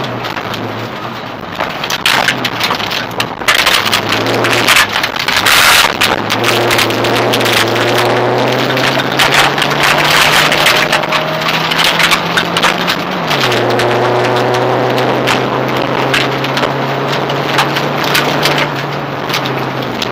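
Rally car engine under hard load, heard from inside the cabin. The note climbs slowly in pitch, drops sharply on an upshift about 13 seconds in and builds again. Gravel and stones clatter against the car's underside in frequent short knocks.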